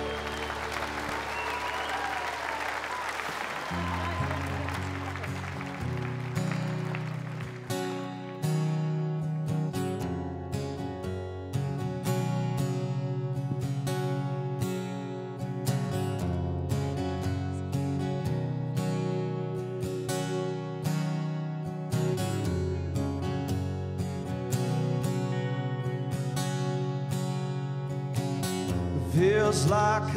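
Audience applause as one song ends, then an acoustic guitar starts a new song with picked notes and chords over a low bass line. A man's voice comes in singing near the end.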